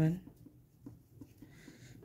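Metal crochet hook working yarn into single crochet stitches: faint scratchy rubbing and a few light ticks.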